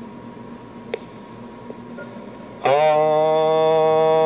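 A man holds one steady, unwavering vowel into a CB radio microphone for about two seconds, starting just before the end, as the test audio that modulates the keyed transmitter for a peak power reading.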